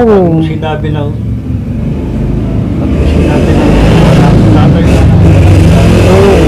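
A motor vehicle's engine running close by, growing louder from about two seconds in and staying loud and steady.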